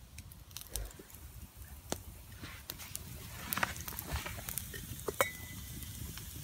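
Wood campfire crackling with scattered sharp pops that grow busier after the first couple of seconds.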